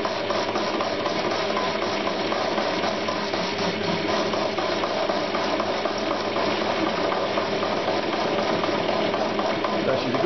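CQ9325 metal lathe running steadily as a carbide facing cutter takes a cut across the end of solid steel round bar, giving an even machining noise.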